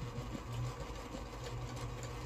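A steady low machine hum with a faint steady higher tone over it.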